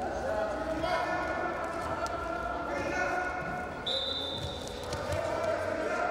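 Men's voices shouting long calls during a standing Greco-Roman wrestling exchange, with scattered thuds and knocks from feet and bodies on the wrestling mat. A brief high steady tone sounds about four seconds in.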